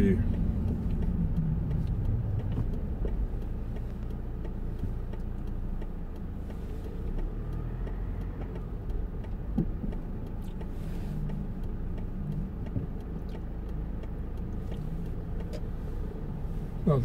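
Car engine and road noise heard from inside the cabin as the car rolls slowly in queuing traffic, a low steady hum that settles quieter after the first few seconds.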